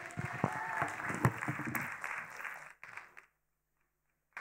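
Congregation applauding for nearly three seconds, then dying away, with one sharp knock about a second in.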